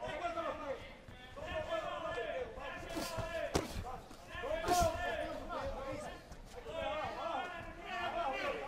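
Boxing gloves thudding as punches land in the ring, a few sharp thuds around three seconds in and again near five seconds, under unintelligible shouting from ringside.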